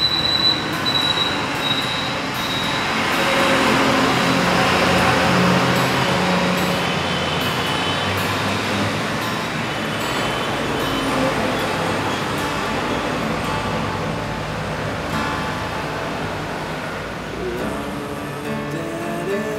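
Acoustic guitar strummed as a song's introduction, largely covered by a loud, steady rushing noise that swells a few seconds in and slowly eases toward the end.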